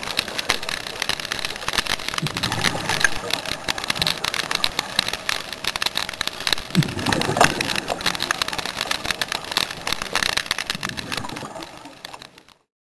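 Underwater sound through a dive camera's housing: a dense crackle of clicks, with deeper rumbling swells about every four seconds from a scuba diver's regulator breathing and exhaust bubbles. It fades out near the end.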